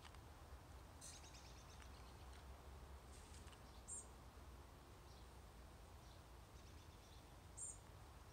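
Near silence with faint outdoor background rumble and a few faint, high bird chirps: a quick run of them about a second in, then single short chirps about four seconds in and near the end.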